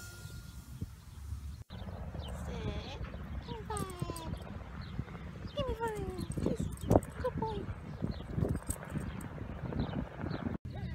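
A Chihuahua–Italian Greyhound mix dog whining in short, falling whimpers while it begs for a treat held in front of it, over a low outdoor rumble.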